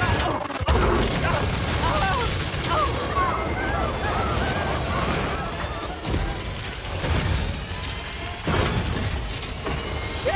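Cartoon train-crash sound effects: heavy booms and crashing about a second in and again near the end, with shouting voices and music underneath.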